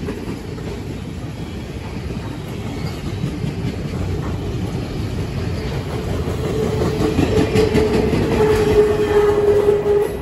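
Long freight train of empty flatcars rolling past at speed: continuous rumble and clatter of steel wheels on the rails, growing a little louder. A steady single tone joins in about six seconds in and strengthens toward the end.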